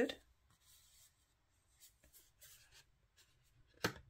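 Faint, scattered rubbing of fingertips over the linen-textured surface of a tarot card's cardstock, with a short sharp click just before the end.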